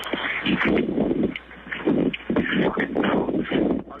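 Recorded phone call played back, muffled and band-limited like telephone audio: irregular rushes of noise with an indistinct muttered phrase. This is the quick, unclear moment of the call that some hear as a racial slur following the F-word and others don't.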